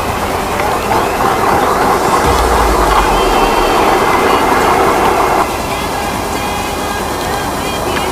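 Wind and road noise picked up by a small body camera's built-in microphone while riding an electric unicycle: a steady rushing noise, with a burst of low rumble from a gust on the microphone about two and a half seconds in and an abrupt change in the noise about five and a half seconds in.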